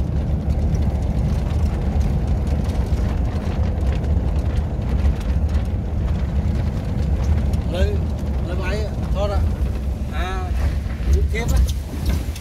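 Steady low rumble of a vehicle driving along a road. From about eight seconds in, short rising-and-falling voice sounds come in over it.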